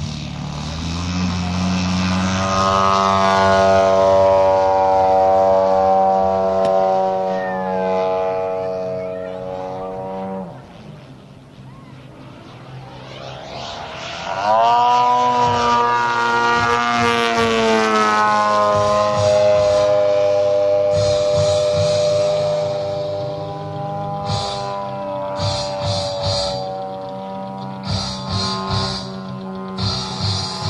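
Radio-controlled aerobatic model plane's engine running at high power for takeoff and climb, its pitch gliding slowly, dipping and fading about ten seconds in, then surging back up with a sharp rise about fourteen seconds in as the plane manoeuvres overhead.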